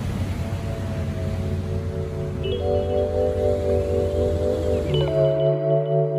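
Background music of soft, sustained keyboard chords that change about every two and a half seconds. Under it is a steady rush of outdoor noise that stops about five and a half seconds in.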